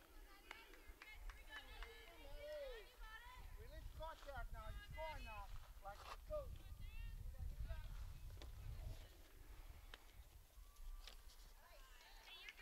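Faint, distant high-pitched voices of softball players and spectators calling out and chattering, over a low rumble.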